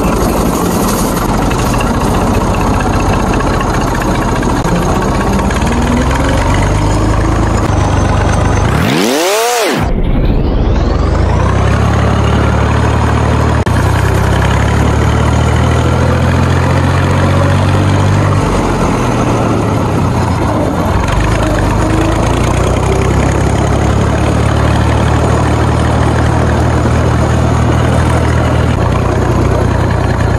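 Farm tractor's diesel engine running steadily as the tractor is driven, its pitch drifting up and down a little. About nine seconds in, a short sweeping whoosh briefly cuts through the engine sound.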